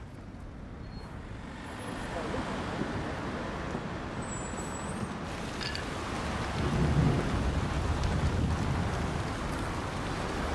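Road traffic on a busy street: a steady rumble of passing vehicles that grows louder about two seconds in, with a heavier vehicle passing loudest about seven seconds in.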